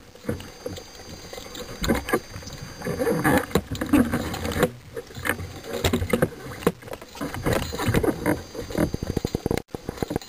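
Underwater handling noise from spearfishing gear as a speared fish is pulled in on the shooting line and the gun is handled: irregular clicks, knocks and rustling water close to the microphone. The sound drops out briefly near the end.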